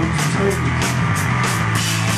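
A rock band playing loud and live, with electric guitars, bass, keyboards and drums, and cymbals striking several times a second over a steady, heavy low end.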